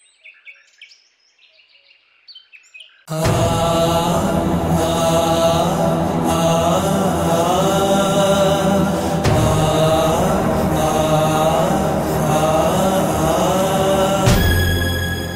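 Faint bird chirps. About three seconds in, loud devotional chanting comes in suddenly over a steady low drone and continues without a break.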